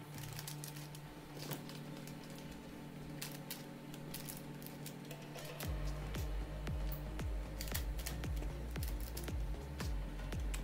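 Background music with sustained tones; a deep bass beat comes in a little over halfway through. Faint scattered clicks sit underneath.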